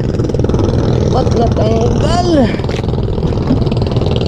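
A boat engine running steadily. A voice calls out in a few rising-and-falling cries a little after a second in.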